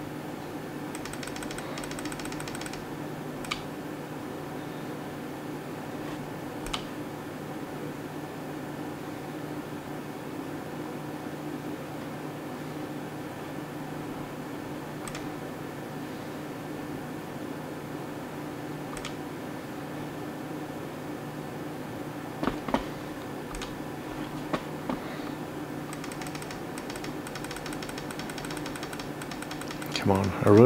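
Steady hum of a computer fan, with scattered sharp clicks and two runs of rapid ticking, about a second in and again near the end, from computer controls being worked at the desk.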